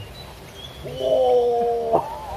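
A voice holding one long, steady note for about a second, falling slightly in pitch, starting about a second in. It is a drawn-out wordless call rather than speech.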